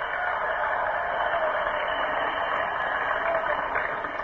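A large crowd applauding steadily in an old, muffled archival recording of a speech.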